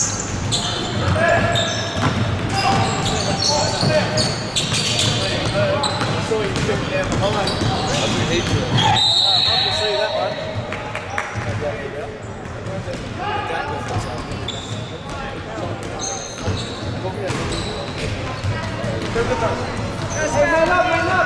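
Live indoor basketball game on a hardwood court: a ball bouncing, sneakers squeaking and players and spectators calling out, with echo from a large hall. A referee's whistle blows about nine seconds in.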